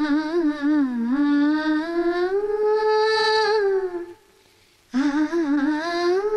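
A single voice humming a slow, wavering melody in long held notes, rising to a higher sustained note midway, breaking off for under a second shortly after the four-second mark and then resuming, with no audible accompaniment.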